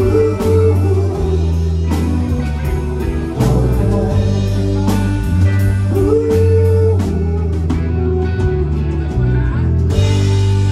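Live rock band playing, amplified: a drum kit keeps a steady beat of about two strikes a second under bass guitar, electric and acoustic guitars and keyboards.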